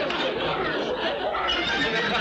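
Several voices talking and shouting over one another in a steady, noisy jumble, with no clear words.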